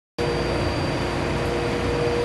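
Steady drone of drilling rig machinery heard from inside the rig's control room: a low rumble with constant humming tones and a faint high whine, starting abruptly just after the start.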